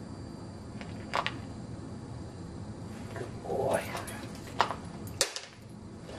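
A corgi eating dry kibble from a plastic bowl: a few sharp clicks and clatters of food and bowl, the loudest two about four and a half and five seconds in, with a softer rustling burst shortly before them.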